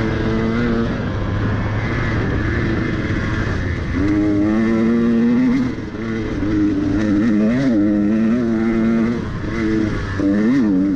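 Dirt bike engine under load on a rocky climb, its pitch rising and falling as the throttle is worked. It gets louder about four seconds in, briefly drops off just before six seconds, then keeps surging up and down.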